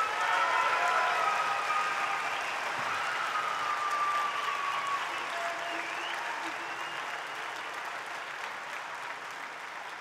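Audience applauding and cheering at the end of a barbershop quartet's song, loudest at first and slowly dying down.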